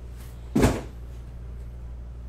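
A single short thump about half a second in, over a steady low hum.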